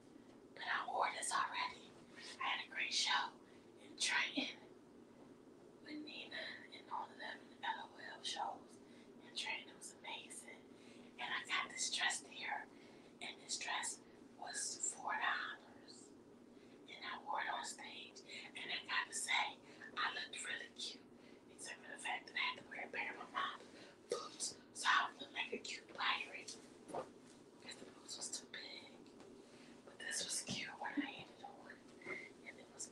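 A woman whispering on and off, over a steady low hum.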